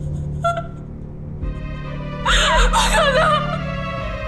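A young woman crying: a short gasp about half a second in, then a choked, sobbing outburst of tearful speech from about two seconds in, over soft background music with long held chords.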